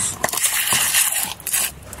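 Plastic spoon digging into copper sulfate crystals inside a plastic bag: the bag crinkles and the granules crunch and scrape in a run of small crackles that dies away near the end.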